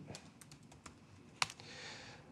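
Quiet typing on a laptop keyboard: a few soft key clicks, with one sharper click about one and a half seconds in.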